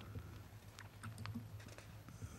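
Faint clicks of a computer keyboard being pressed a few times, irregularly, over a steady low hum.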